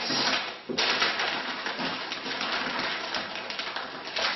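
Sheets of packing paper rustling and crinkling as they are folded around a glass vase, with a short lull just under a second in.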